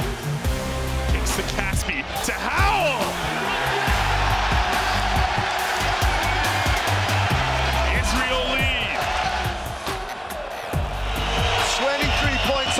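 Background music with a steady bass beat over the continuous noise of an arena crowd.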